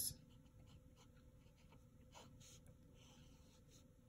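Faint scratching of a ballpoint pen writing a fraction on lined notebook paper, in short separate strokes.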